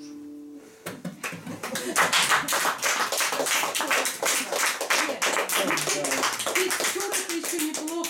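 The final acoustic guitar chord dies away, then small-audience applause starts about a second in and continues as dense, even clapping.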